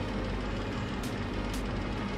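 Steady low background rumble and hiss, with faint short ticks about twice a second.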